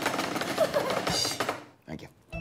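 Hands drumming rapidly on a wooden dining table as a drum roll, a dense run of quick knocks that stops about a second and a half in.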